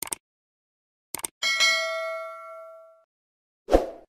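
Subscribe-button animation sound effects: a quick double mouse click, two more clicks a little after a second in, then a notification-bell ding that rings out for about a second and a half. A low thump comes near the end.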